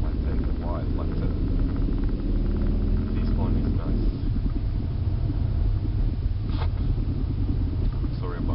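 Car driving, heard from inside the cabin: a steady low engine and road rumble, with a held engine hum in the first half.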